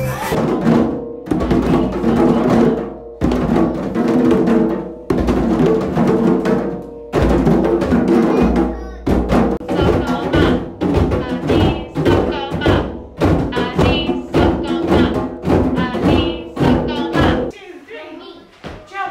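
Recorded dance music with a steady beat and bass for the first half; then, about halfway in, a group of children playing djembe hand drums, a fast run of hand strikes with children's voices mixed in.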